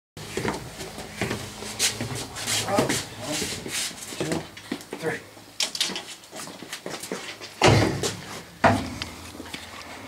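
Knocks and clunks of a small metal shaper being manoeuvred and lowered onto its steel cabinet base, with two heavier thuds near the end as it is set down. Men's low voices are mixed in.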